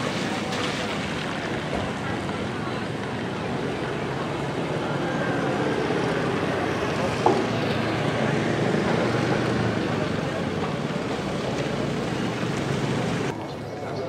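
Outdoor ambience: a steady rush of noise with indistinct voices in it and one sharp click about seven seconds in. The sound drops abruptly just before the end.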